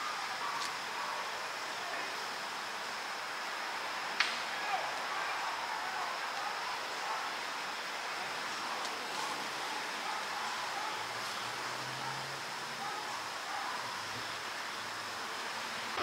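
Steady hissing outdoor background noise with a faint high steady tone, broken by one sharp click about four seconds in.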